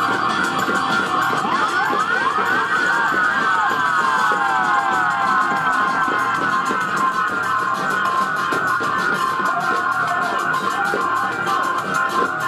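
Live band playing with a steady drum beat. In the first few seconds a siren-like sweeping tone falls again and again, its repeats overlapping.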